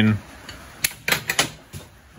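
A quick run of about five sharp metallic clicks and taps within a second, from the stainless suspension tube and welding gear being handled on the steel bench while setting up to weld.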